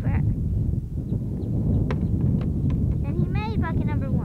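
Wind buffeting the camcorder microphone as a steady low rumble. A few light knocks about halfway through come from tennis balls bouncing on the pavement and buckets. Short bits of voice are heard at the start and near the end.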